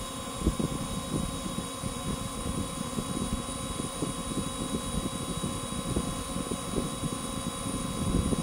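Wind buffeting the microphone: an uneven low rumble that flutters irregularly, with a faint steady hum higher up.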